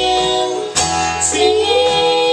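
Live bluegrass band playing: acoustic guitar, mandolin, fiddles and banjo under a woman's voice holding a sung note. A new chord is strummed about three quarters of a second in.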